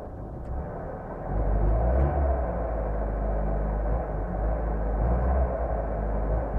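Carburetted car engine idling, heard from inside the cabin; the revs waver unevenly and the engine gets louder from about a second in. The owner blames poor 80-octane petrol for the revs dropping and the engine stalling.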